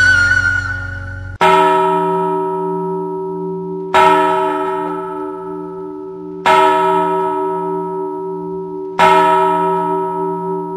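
A church bell tolling four times, a stroke about every two and a half seconds, each ringing on and slowly fading before the next. It starts about a second and a half in, as a held musical note ends.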